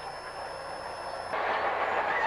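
Crawler bulldozers working through brush: steady diesel engine rumble with clanking tracks, growing louder from about a second and a half in.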